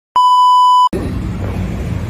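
A loud, steady 1 kHz test-tone beep lasting under a second, the tone that goes with TV colour bars. It cuts off suddenly into low outdoor background rumble.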